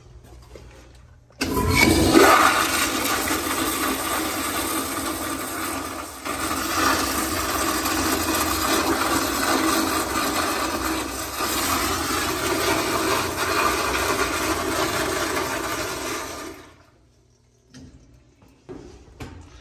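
American Standard Madera commercial toilet flushed by its chrome flushometer valve. A sudden, loud rush of water starts about a second and a half in and runs strong for about fifteen seconds, with a brief dip partway through, then cuts off sharply near the end.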